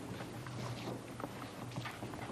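Footsteps and shuffling of several people moving on a stage floor: irregular soft knocks over a low steady hum.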